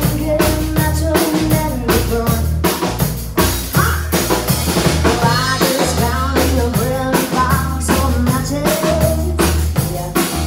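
Live band playing, with the drum kit keeping a steady beat of kick and snare under a low bass part.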